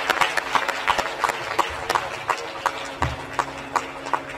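Scattered hand clapping from an audience, many uneven claps a second, over a faint steady drone note.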